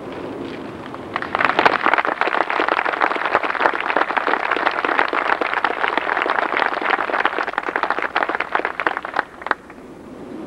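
Audience applauding, starting about a second in and dying away with a few last claps near the end.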